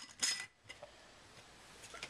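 Glass jar clinking against its metal lid ring as it is set in place, one sharp clink with a brief ring a quarter second in, then a faint click near the end.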